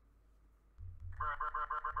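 A man laughing: after a short near-quiet moment, about a second in he breaks into a quick, even run of high-pitched 'ha' pulses, several a second.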